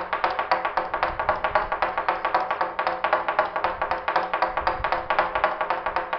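Wooden toaca (semantron), a long suspended wooden beam, beaten with a wooden mallet in a rapid, continuous rhythm of dry knocks, several a second, with some strikes accented.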